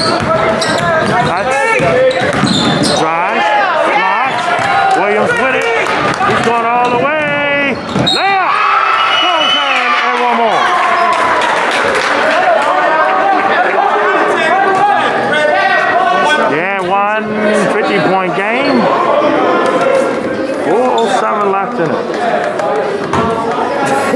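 Basketball being dribbled and bounced on a gym's hardwood floor during a game, amid players' and spectators' shouting voices.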